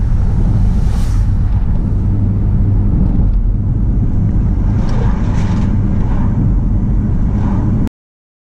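A moving vehicle heard from inside its cabin: a loud, steady low rumble of engine and road noise that cuts off suddenly near the end.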